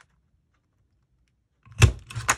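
A Crop-A-Dile hand punch squeezed through paper to punch a 3/16-inch hole: one sharp, loud clack near the end.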